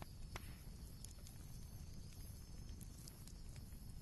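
A quiet pause: faint low background noise, with a single soft click about half a second in.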